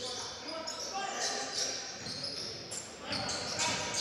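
Basketball being dribbled on a wooden gym floor during play, with the echo of a large sports hall and faint voices in the background.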